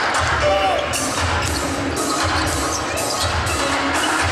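Basketball game sound: a ball being dribbled on a hardwood court, low thuds about twice a second, under arena crowd noise with background music.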